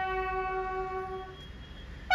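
A bugle call: one long, low note is held and then dies away about a second and a half in.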